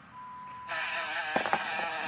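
A fly buzzing, a wavering drone that starts abruptly about two-thirds of a second in and carries on.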